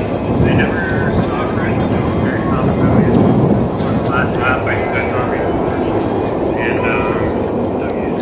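Steady, loud rumble of wind and handling noise on the camera's microphone, with people talking faintly behind it.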